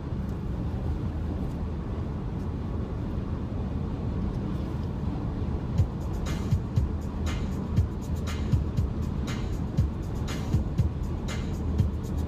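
Steady road noise inside a moving car's cabin with music playing; a regular beat comes in about halfway, roughly one and a half beats a second.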